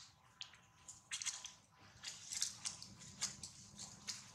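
Irregular soft clicks and crackles, several a second, from a mother and baby long-tailed macaque lying close together on grass and dry leaves.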